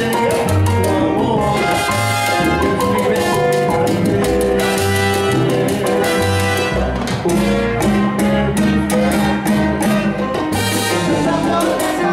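A live salsa band playing, with a repeating bass line under hand percussion and keyboard.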